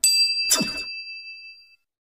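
Bell-notification 'ding' sound effect: one bright, high chime that rings and fades over about a second and a half, crossed about half a second in by a short swoosh that falls in pitch.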